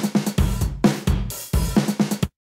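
Sampled drum loop playing a steady beat of sharp drum hits, about two or three a second.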